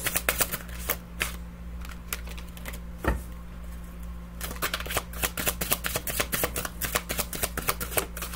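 A deck of tarot cards being shuffled by hand: a run of quick papery clicks, one sharper snap about three seconds in, then a dense run of clicks over the last three seconds. A steady low hum runs underneath.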